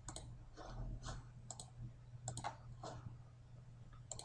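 Several faint computer-mouse clicks at uneven intervals, over a low steady hum.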